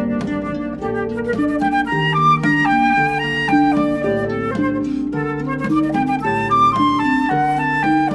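Flute and harp duet: the flute plays a stepping melody of held notes over harp accompaniment.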